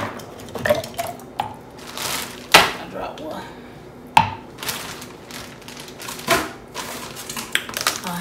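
Frozen strawberries dropped by the handful into a blender container, making a scattered series of sharp knocks and clicks. Kitchen containers are handled in between, with brief rustles.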